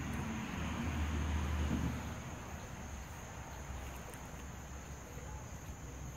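Outdoor background noise: a low rumble that swells over the first two seconds and then eases, under a steady high-pitched buzz.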